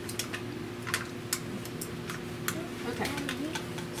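Irregular light clicks and taps of plastic as a livestock vaccine gun is handled and its hose fitted on, about ten in a few seconds, over a steady low hum.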